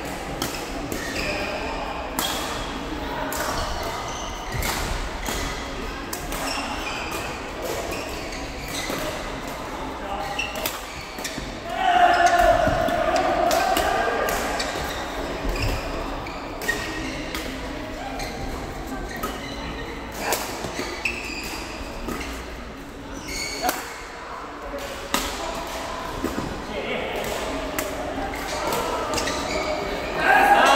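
Badminton rally in a large, echoing sports hall: sharp racket hits on the shuttlecock at irregular intervals, with voices from the hall throughout and a loud voice about twelve seconds in.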